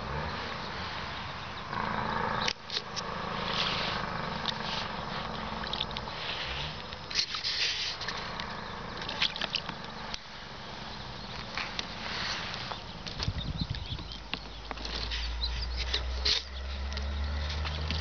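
A young Canada lynx splashing and dabbing at water in a rubber tub, in scattered short bursts, over a steady low hum of highway traffic. A deeper traffic rumble swells in for the last few seconds.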